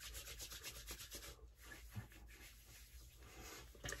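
Faint rubbing of palms together, wet with a splash of liquid aftershave, quick fine strokes that fade after about a second and a half into soft traces of hands moving on the face and neck.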